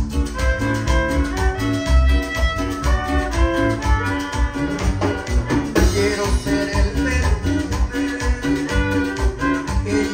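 Live Latin dance band playing: violin and electric guitar carry the melody over bass guitar, timbales and a steady dance beat.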